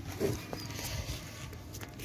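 Faint, steady sizzle of desi ghee melting and frothing in a metal kadhai over a wood-fired chulha, with a brief faint pitched sound near the start.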